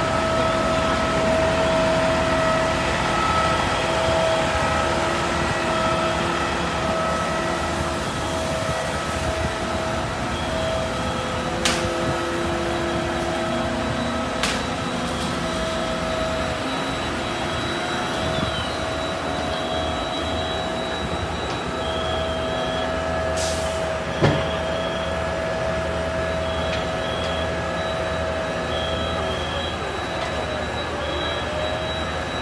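FDNY fire trucks running at a working fire: a steady diesel engine drone with a constant high whine on top. A few sharp knocks break through, the loudest about 24 seconds in.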